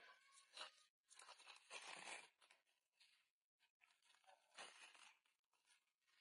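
Faint tearing and rustling of a disposable sanitary pad being pulled apart by hand, in several short spells with pauses between.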